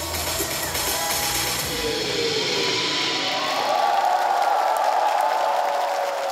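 A live trot band's final chord rings out as the song ends, with an audience cheering over it; the bass and drums die away about halfway through.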